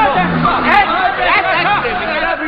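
Speech only: people talking, with voices overlapping in chatter.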